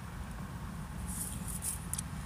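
Low, steady hum inside a car cabin, with a few faint short rustles a little after a second in.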